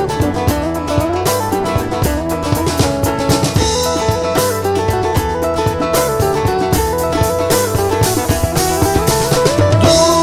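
Armenian folk-rock band playing an instrumental passage: a drum kit keeps a steady beat under guitar and bass, with a melody line gliding above them.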